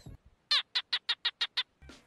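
A quick run of about seven short, high chirps, evenly spaced, lasting about a second. It plays as a comic sound effect in a gap where the background music drops out.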